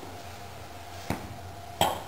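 Two short knocks over a steady low room hum, a faint one about a second in and a louder one near the end.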